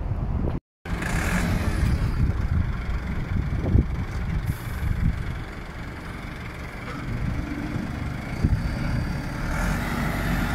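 Farm tractor's diesel engine running as the tractor drives, its level rising and falling a little. The sound cuts out completely for a moment just under a second in.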